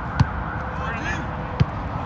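Two sharp thuds of a soccer ball being kicked, about a second and a half apart, over steady outdoor background noise and faint distant players' shouts.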